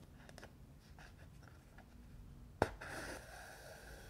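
Embroidery needle and thread worked through a taut painted stretched canvas: a few faint ticks, then a sharp click of the needle through the canvas about two-thirds of the way in, followed by a short scratchy rush as the thread is pulled through.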